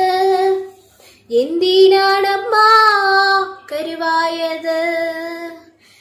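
A girl singing a Malayalam folk song (naadan paattu) solo and unaccompanied, in long held notes, with a short breath pause about a second in.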